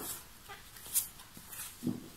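A deck of tarot cards being shuffled by hand: a few short, dry card rustles and riffles, about half a second to a second apart.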